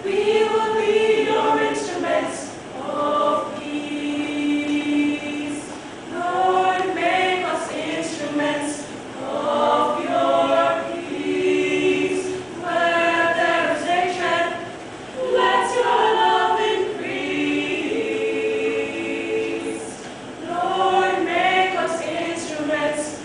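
Small choir of young women singing a cappella, held notes in phrases with short breaks between them.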